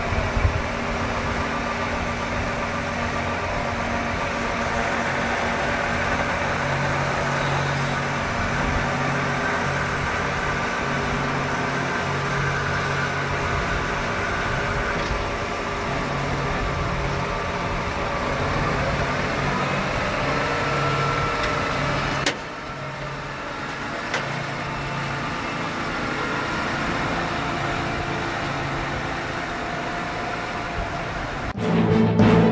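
John Deere 7R 330 tractor's six-cylinder diesel running steadily under load while it pulls a Claas Liner 3600 four-rotor swather through cut grass. The sound drops a little in level about three-quarters of the way through.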